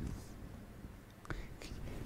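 A faint pause in a man's speech: soft breathy sounds at the start, then a single short click a little past one second in.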